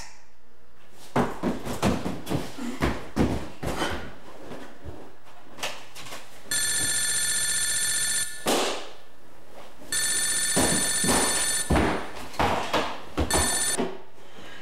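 Telephone ringing: two long rings about three and a half seconds apart, then a third ring cut short, as a handset is picked up. Scattered knocks and rustles of handling come before and between the rings.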